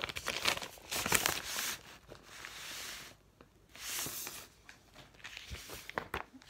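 Packaging being torn open and crinkled by hand, in several bursts with short pauses between.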